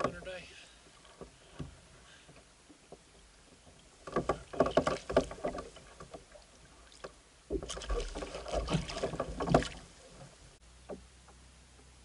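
A large catfish splashing in the water beside a kayak as it is let go over the side, in two bursts of about two seconds each, the first about four seconds in and the second louder one a little past halfway.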